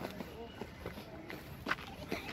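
Footsteps, a few sharp steps, the loudest near the end, with indistinct voices of people around.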